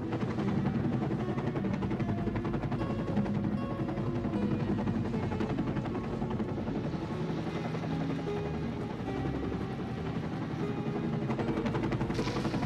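Coast Guard rescue helicopter hovering low over water, its rotor beating in a fast, steady chop, with music underneath.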